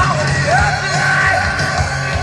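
Live grunge band playing loudly: bass and drums with electric guitar, and a voice yelling a sung line over it.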